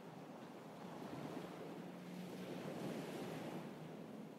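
Faint sea waves washing gently onto a sandy, pebbly shore: a soft, even wash that swells slightly in the middle.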